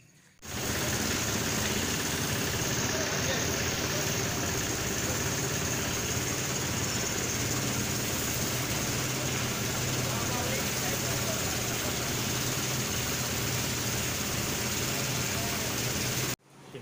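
Loud, steady background noise with a low mechanical hum like an idling engine and faint, indistinct voices, starting and cutting off abruptly.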